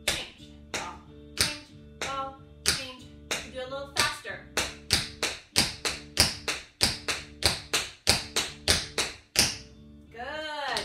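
Metal taps on tap shoes striking a hard floor in a series of sharp clicks, scattered at first, then regular at about three a second from about four seconds in. Background music plays under them.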